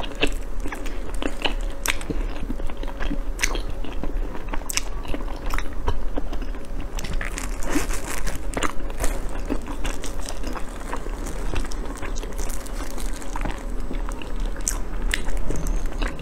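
Close-miked eating of soft chocolate mochi: biting and chewing with many small, irregular wet clicks and smacks of the mouth.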